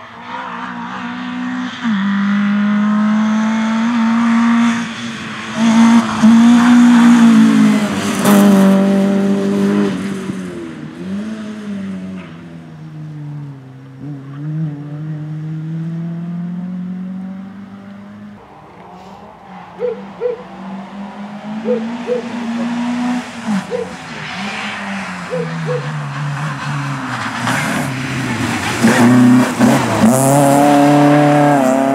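Opel Astra GSi rally car's engine revving hard, its pitch climbing and dropping again and again through gear changes and lifts for the bends. It is loud early on, dies down to a distant drone through the middle, and builds up loud again near the end as the car comes close.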